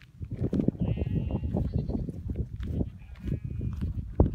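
Bleating from a mixed herd of goats and sheep: one bleat about a second in and another near the end. Both sound over a loud, irregular low rumble.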